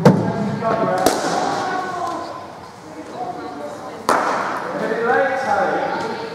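Sharp knocks of cricket balls striking bats, matting and netting in an echoing indoor hall: three strikes, the loudest right at the start, another about a second in and one about four seconds in. Voices carry faintly from the hall.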